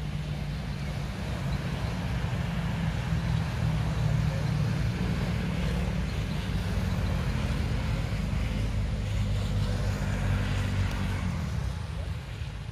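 A motor vehicle's engine running nearby: a low, steady hum that grows louder about two seconds in and fades near the end.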